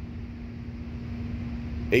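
Steady low background hum with a faint rumble underneath, no distinct event; a man's speech begins at the very end.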